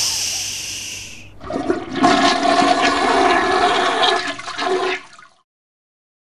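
A toilet flushing: a loud hiss at the start fades over about a second, then water rushes for about three seconds and cuts off suddenly.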